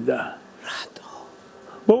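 Conversational speech trails off into a short pause filled by a breathy, whispered sound, and a voice starts speaking again near the end.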